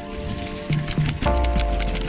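Background music: held chords over a bass line, with a new chord and a deep bass note coming in a little past halfway, and light percussive ticks.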